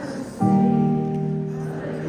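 Live band music on a concert stage, slow and held: sustained chords, with a new chord coming in about half a second in.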